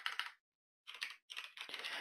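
Typing on a computer keyboard: a quick run of keystrokes, a short pause about half a second in, then another run of keystrokes.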